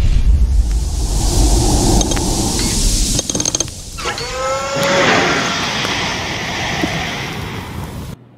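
Sound effects of an animated intro sting. A deep rumble with hiss for about three seconds, then a quick run of metallic clicks, then a rising pitched whoosh about four seconds in that fades away.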